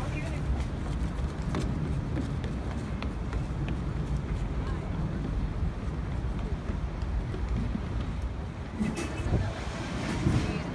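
Outdoor ambience: a steady low rumble with wind on the microphone and faint voices.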